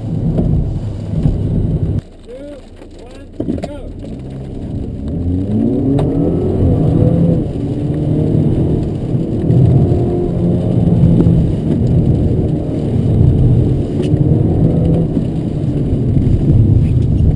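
Car engine heard from inside the cabin, accelerating hard with its pitch climbing and dropping back again and again as it changes gear. It falls away to a much quieter level for a moment about two seconds in, then builds up again.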